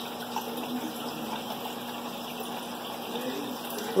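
Steady rushing and trickling of aquarium water running through a hang-on breeder box and the tank's filtration, with a low steady hum beneath it.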